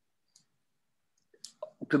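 Near silence on a video-call line, broken by a few faint short clicks about a second and a half in. Then a man's voice starts speaking at the very end.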